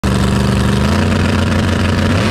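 Drag race car engine running loudly and steadily at the starting line, its pitch stepping up slightly about a second in.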